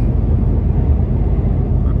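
Steady low rumble of engine and road noise heard inside a moving lorry's cab at motorway speed.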